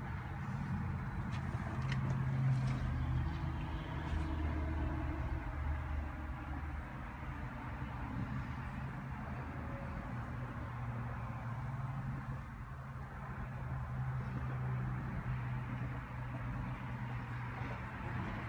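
A 2014 Toyota Corolla LE's four-cylinder engine idling, heard from inside the cabin as a steady low hum.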